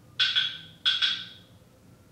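Two sharp, ringing knocks, each a quick double strike, the second pair about two-thirds of a second after the first, each ringing out within about half a second.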